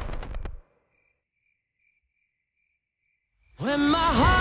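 Upbeat dance-pop music cuts off abruptly about half a second in, leaving near silence with faint, evenly repeating cricket chirps: the comic crickets effect for an awkward silence. The music comes back loudly just before the end.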